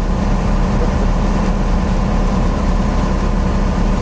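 A boat's engine running with a steady low drone, under a rush of wind and sea.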